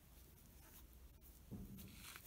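Near silence: faint rustle of twine yarn drawn over a crochet hook and fingers as stitches are worked.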